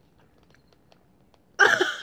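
A stuck bottle cap twisted through a fabric scarf for grip: a few faint clicks and rustles. About one and a half seconds in, a sudden loud strained cry of effort from a woman.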